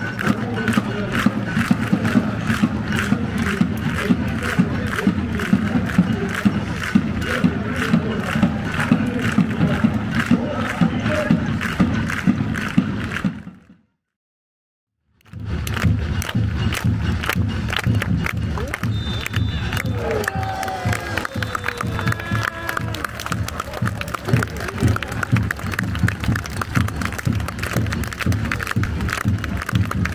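Football supporters chanting together in the stands to a steady, regular drum beat. The sound cuts out for about a second and a half midway, then the chanting and drumming pick up again.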